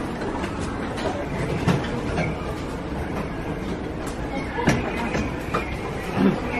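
Steady low rumble of a large indoor hall, with indistinct voices in the background and a few light knocks.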